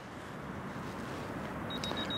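Steady rushing ambient noise of an open beach, slowly growing louder, with a few faint short high beeps near the end.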